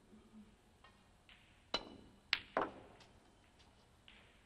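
Snooker break-off: the cue tip strikes the cue ball with a sharp click, then about half a second later two more sharp clacks as the cue ball hits the pack of reds and the balls knock together.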